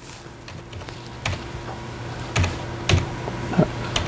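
A few scattered clicks from a computer keyboard, four or so unevenly spaced strokes, over a steady low hum.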